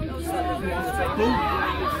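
Several people talking and calling out at once, overlapping chatter with no single clear speaker.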